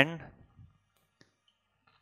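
The tail of a man's spoken word, then near quiet broken by a few faint clicks of a marker tip on a whiteboard during writing, the clearest about a second in.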